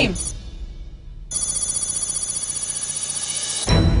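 Electronic alarm-clock ringing sound effect: a fast-pulsing high ring that starts about a second in and lasts about two and a half seconds, over quiet background music. It ends in a deep hit just before speech resumes.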